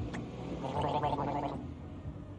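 A person gulping a drink, a gurgling sound lasting about a second, starting about half a second in.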